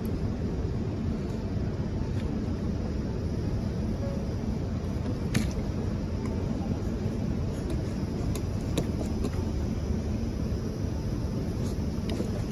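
A steady low outdoor rumble with no clear source, of the kind wind on the microphone or distant traffic makes. A few small clicks sound through it, the sharpest about five seconds in.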